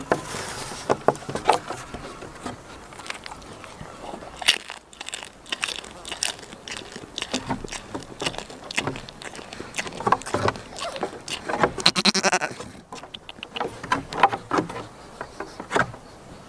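Goat bleating close to the microphone, with one clear pulsing bleat about twelve seconds in. Many sharp taps and clicks run through it.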